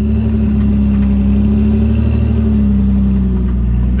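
2004 Jeep Wrangler LJ's 4.0-litre inline-six running at low revs under load as it crawls up a rock ledge, its note rising and easing slightly with the throttle.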